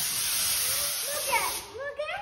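A loud, steady hiss that fades out near the end.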